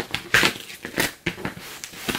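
Crinkling and scraping of card as a cardboard poster folder is opened by hand at its sticker seal, in several short bursts, the loudest about a third of a second in and another at about one second.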